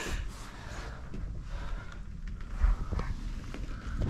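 Quiet movement in a small room: soft footsteps and a low rumble from the handheld camera, with a few faint clicks.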